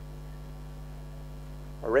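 Steady low electrical mains hum with no change in level, and a man's voice beginning just before the end.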